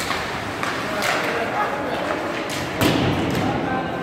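Ice hockey play on an indoor rink: sharp knocks of sticks and puck against the ice and boards, the loudest a little before the end, over a steady hum of the arena and voices.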